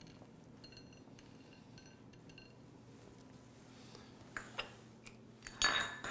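Quiet kitchen with faint light ticks and clinks of toasted pine nuts and small utensils on a ceramic plate, then a louder clink of metal kitchen utensils near the end.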